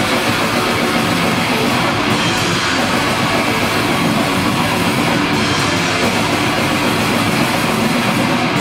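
Death metal band playing live: distorted electric guitars and a drum kit in a loud, dense, unbroken wall of sound, as recorded from the audience.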